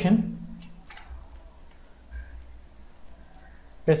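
A few faint computer mouse clicks, spread out and separated by quiet, over a low steady hum.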